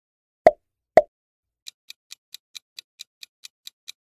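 Two short pop sound effects about half a second apart, as the quiz's answer buttons pop onto the screen. Then a quick, high clock-like ticking of a countdown timer starts, about four to five ticks a second.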